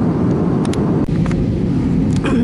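Airliner cabin noise from a passenger seat: the steady low drone of the jet engines and rushing air, with a couple of faint clicks about a second in.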